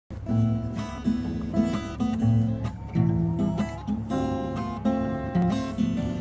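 Classical acoustic guitar playing an instrumental introduction: plucked and strummed chords changing about every half second, starting abruptly at the very beginning.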